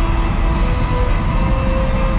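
A loud show soundtrack played over theater speakers: dramatic music with sustained notes over a deep, steady rumble of a rocket launch.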